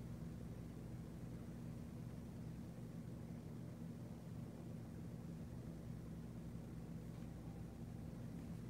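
Quiet room tone: a faint, steady low hum with no other distinct sound.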